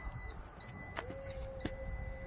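2024 Jeep Wagoneer power liftgate closing: a high warning beep about once a second, two sharp clicks, and from about a second in the steady hum of the liftgate's drive motor.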